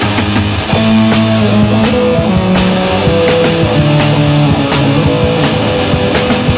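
Punk rock instrumental passage: distorted electric guitar holding long notes over bass and a driving drum kit beat, with no vocals.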